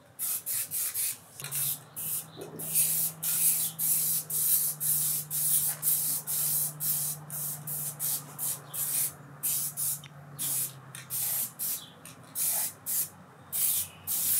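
Aerosol can of Rust-Oleum High Performance Enamel spraying in short hissing bursts, two or three a second, with brief gaps between them.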